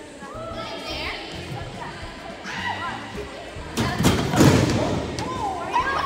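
A heavy thud about four seconds in, typical of a body hitting a wooden gym floor, amid girls' high-pitched squeals and shrieks. Background music with a steady beat runs underneath.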